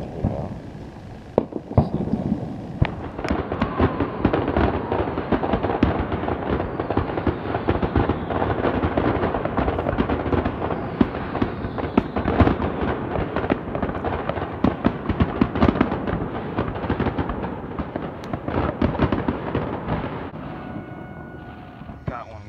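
Fireworks display: from about three seconds in, a dense run of overlapping bangs and crackles of aerial shells bursting. It goes on almost without a break and eases off near the end.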